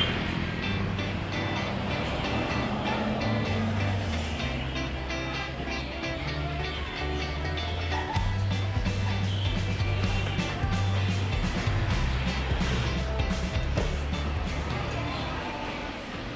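Background music with a steady beat and a bass line that steps between low notes.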